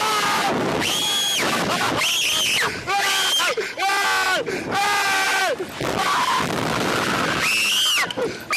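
A man and a woman screaming in fright on a thrill ride: a string of high, shrill drawn-out screams, with lower held yells between about three and six seconds in.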